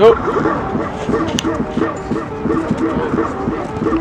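A short, loud shout right at the start, then a continuous background of people's voices.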